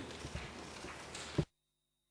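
Faint room noise through a microphone with a few soft knocks, ending in a sharper thump about a second and a half in, after which the sound cuts off abruptly to silence.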